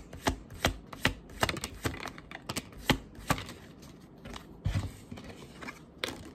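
Tarot cards being shuffled by hand, overhand: a run of crisp, irregular card slaps and clicks, several a second, thinning out in the second half with a soft thump about five seconds in.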